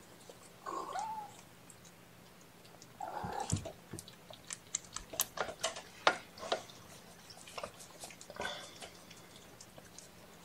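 A cat mews briefly about a second in and again at about three seconds, with small clicks and soft handling noises in between.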